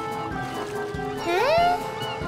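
Light background music with a steady beat. About a second and a quarter in, a short high voice glides upward in pitch, a cartoon character's surprised 'ooh?'.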